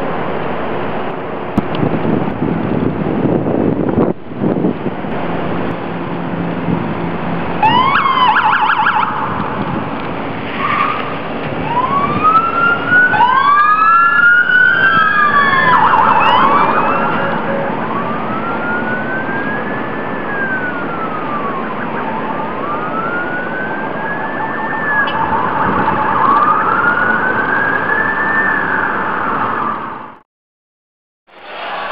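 Police car sirens over steady street noise: a quick yelping burst about eight seconds in, then slow rising-and-falling wails every few seconds, with two or three sirens overlapping in the middle.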